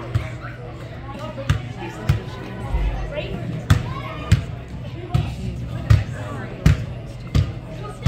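Soccer ball thudding again and again as it is kicked and bounces off the boards, about nine sharp, irregularly spaced thuds, over indistinct voices of players and spectators.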